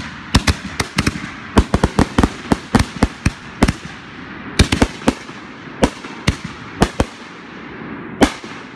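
Aerial fireworks going off in a fast, irregular run of sharp bangs, about three a second, with a brief lull midway, over a continuous hiss between the reports.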